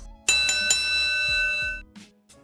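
Boxing-ring bell sound effect: three quick strikes, then a ringing tone that holds for about a second before dying away, marking the start of a new round.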